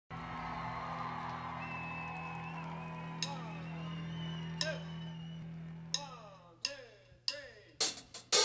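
Quiet musical lead-in from a live band: a steady low hum with a thin high tone held for about a second. Then come sharp single hits, each with a short falling ring, spaced more than a second apart at first and closer together near the end.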